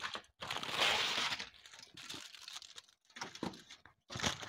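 A sheet of aluminium foil crinkling as it is handled and crumpled by hand, loudest in the first second and a half, then quieter scattered crackles.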